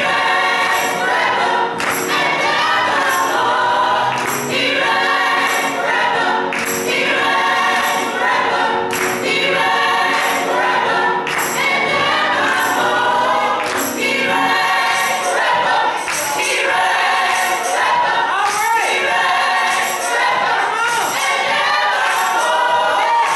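A small gospel choir singing a worship song together, with hand claps keeping a regular beat.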